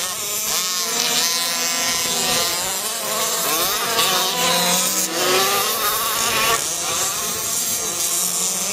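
Several 1/5-scale HPI Baja RC buggies with small two-stroke petrol engines racing together, the engines revving up and down over each other with constantly shifting pitch.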